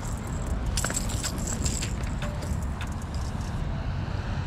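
Scattered light clicks and rattles of a just-landed fish and fishing tackle being handled, over a steady low rumble.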